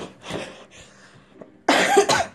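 A person gives a loud, harsh cough near the end, after a few short, softer breathy sounds.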